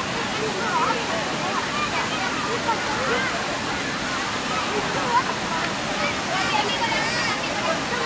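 Water pouring steadily over a low concrete weir, an artificial waterfall, with the voices of many people calling and shouting over it.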